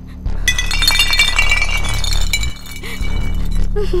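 Glass shattering: a burst of breaking glass about half a second in, with pieces ringing and tinkling for nearly two seconds before dying away, over a low music drone.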